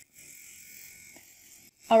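Deminuage NanoPen Lux microneedling pen buzzing faintly and steadily on its lightest (blue) setting as its nano tip stamps against the skin. The buzz stops shortly before the end.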